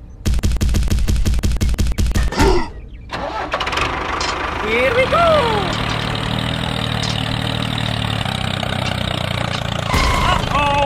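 Tractor engine sound: a rapid, even clatter of cranking for about two and a half seconds, a brief pause, then the engine catches and settles into a steady idle. Short voiced exclamations break in as the cranking stops and again about five seconds in.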